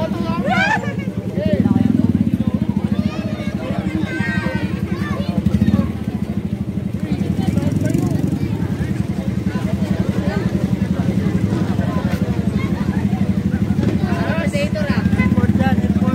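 A motorcycle engine running steadily close by, its fast even pulsing throughout, with people's voices calling and chattering over it.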